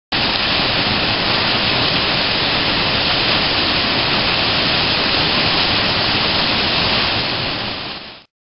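Water falling from outlets into a dam spillway pool, a steady rush that fades out near the end.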